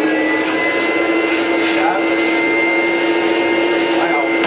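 Vacuum cleaner motor running steadily at full speed: a constant hum with a steady high whine above it.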